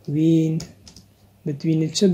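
A few keystrokes on a computer keyboard, heard between and under a voice speaking in slow, drawn-out syllables.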